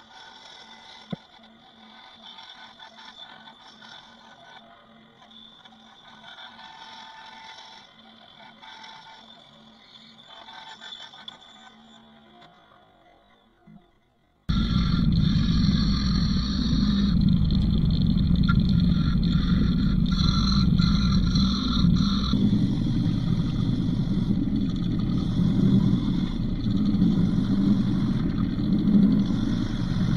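A bandsaw cutting a small oak disc, fairly quiet, then about halfway through a sudden change to a much louder Central Machinery combination belt and disc sander running steadily as the disc's edge is sanded round against the sanding disc.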